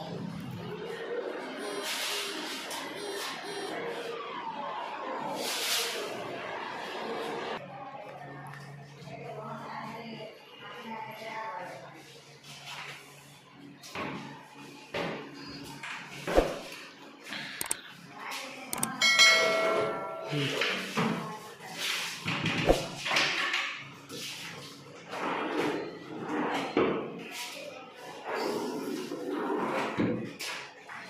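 Wardrobe shutters being opened and shut by hand. Through the second half come a run of sharp knocks and thuds, with a brief ringing tone near the middle, over indistinct voices.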